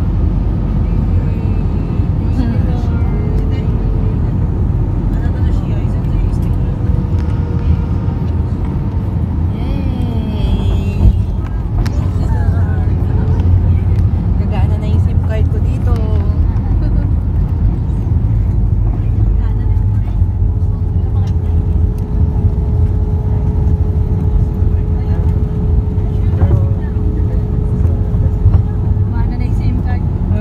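Cabin sound of an Airbus A320-family airliner landing: a loud steady rumble of engines and airflow, with a bump about eleven seconds in as the wheels touch down. The rumble then grows louder for several seconds while the jet rolls and slows on the runway.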